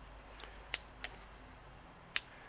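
Two sharp metallic clicks about a third of a second apart, near the middle, from the lockwork of an 1849 Colt pocket revolver being worked by hand.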